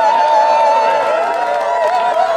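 Two women singing a long held note together into microphones, one voice above the other, both with a wavering vibrato. A crowd starts cheering and whooping underneath them toward the end.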